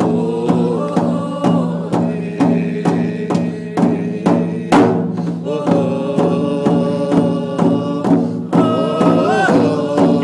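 A woman singing a chant-like song while beating a large hide-covered hand drum with a stick in a steady, even beat. There is a short break in the singing near the middle, where a single stronger drum stroke stands out.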